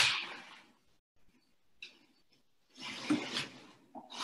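Noisy breaths close to the microphone. A sharp exhale right at the start fades within about half a second, a faint click comes about two seconds in, and a longer breathy rush follows near the end.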